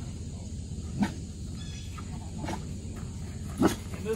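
A boxer dog giving three short, low barks, spaced a second or more apart, the last the loudest.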